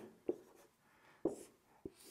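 Dry-erase marker writing on a whiteboard: a few brief, faint strokes with pauses between them.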